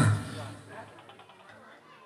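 Speech through a microphone and loudspeaker cuts in abruptly and fades within about half a second to faint voices, over a steady low hum.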